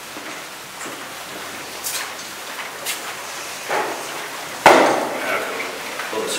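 A few sharp knocks and clatters over a steady background noise, with a loud thud about two-thirds of the way through that fades over half a second.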